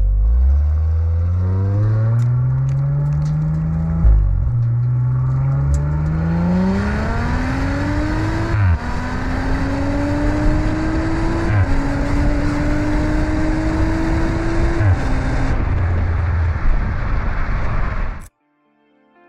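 Exhaust of an Audi RS5's twin-turbo V6 under hard acceleration, the pitch climbing through each gear and dropping sharply at four quick upshifts. Wind rushes over the microphone as the speed builds, and both settle after the last shift.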